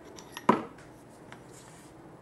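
Metal drill-sharpener chuck being handled as a drill bit is taken out: one sharp metallic click with a short ring about half a second in, then a few faint small clicks.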